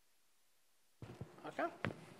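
Quiet room tone, then about a second in a few sharp knocks around a man saying "OK".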